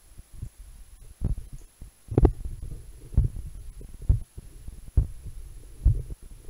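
A human heartbeat picked up through an analogue stethoscope's chest diaphragm by a lavalier microphone placed in the tubing: low thumps about once a second.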